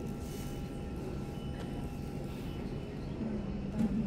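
Steady low rumble and hiss of an underground metro platform, with a faint steady hum of a few tones.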